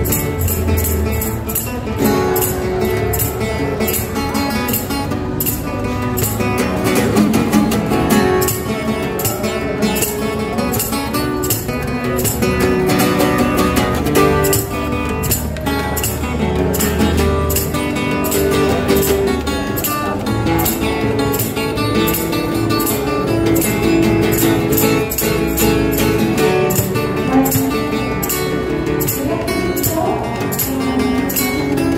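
Solo acoustic guitar, capoed, playing an instrumental cover: a fingerpicked melody over a steady beat of sharp percussive hits.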